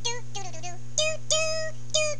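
A high-pitched voice singing a wordless tune in short 'doo' syllables, with one note held longer just past the middle, over a steady low hum.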